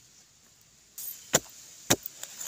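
A digging tool chopping into hard, dry soil: two sharp strikes about half a second apart in the second half.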